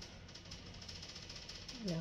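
A pause in talk: faint room tone with a steady low hum.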